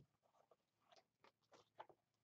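Near silence, broken by a few faint, short crackles of construction paper being handled as the paper totem model is moved and lifted.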